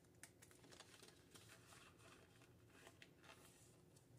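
Near silence with faint rustling and a few light clicks from paper banknotes and a plastic cash-envelope binder being handled.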